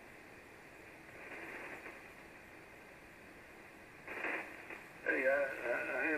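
Steady band hiss from an Icom IC-706MKIIG HF transceiver's speaker receiving 75-metre single-sideband in a gap between transmissions. A man's voice comes through the radio briefly about four seconds in, then again near the end.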